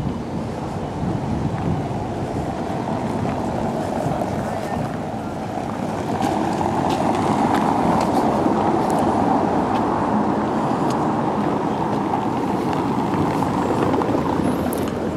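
Car tyres rumbling over cobblestones, a steady rushing noise that grows louder about six seconds in and stays up.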